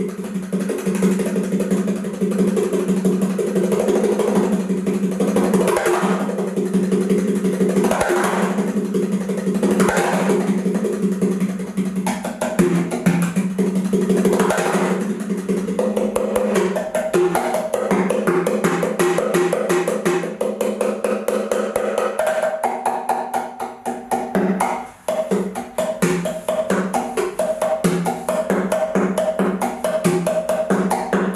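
A rectangular wooden percussion box with pads of different pitches on top, played with the fingers in a fast, dense rhythm. The strikes ring at a few set pitches, and higher notes come in more over the second half.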